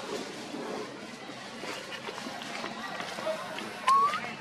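Indistinct voices in the background. Near the end comes a sharp click, then a short rising squeak from a baby macaque.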